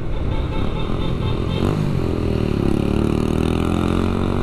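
Motorcycle engine under way, pulling harder from about halfway as the bike speeds up, with its pitch climbing steadily, over steady road and wind noise.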